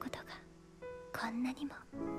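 Anime character dialogue, a voice speaking in short phrases over soft background piano music with sustained notes.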